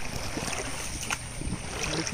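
A steady rush of river water moving past a coracle, with wind on the microphone and a single sharp click about halfway through.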